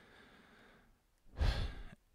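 A man's single audible breath, a short breathy rush about one and a half seconds in, taken during a pause in his speech.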